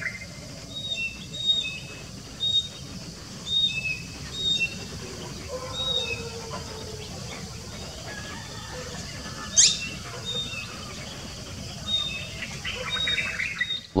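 Bird calls: short high chirps repeating about once or twice a second over a faint steady hiss, with one sharp rising call about ten seconds in.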